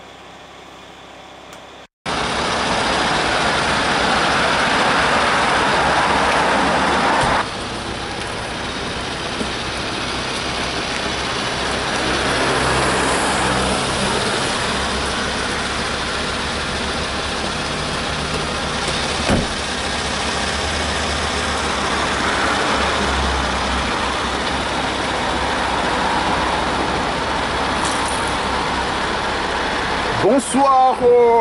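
Steady road and engine noise inside a moving car, starting abruptly about two seconds in after a quieter stretch.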